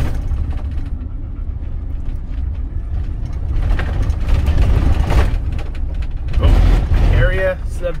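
Camper van driving on a gravel road, heard from inside the cab: a steady low rumble of engine and tyre noise that swells louder a few times.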